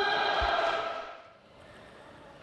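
A table tennis player's drawn-out shout at the end of a point. It is held for about a second and fades out, with a dull low thump about half a second in.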